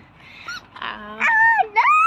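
A young girl's high-pitched, drawn-out whining voice, without words, starting a little over a second in and bending down and back up in pitch.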